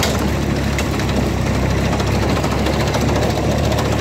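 Fordson Dexta tractor's engine running steadily at a constant speed.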